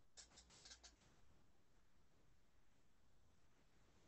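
Near silence: faint room hiss through a headset microphone, with a quick run of about five soft clicks or scratches in the first second.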